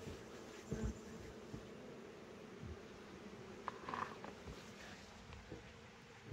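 Honey bees buzzing faintly and steadily around mating nucs, with a short thump a little under a second in.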